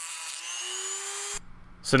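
Dremel rotary tool with a cutoff wheel running at speed against a wooden craft stick: a steady whine that rises slightly in pitch. It cuts off abruptly a little over a second in.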